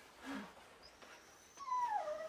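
A dog whining: about a second and a half in, a long high tone starts, slides down in pitch and then holds steady.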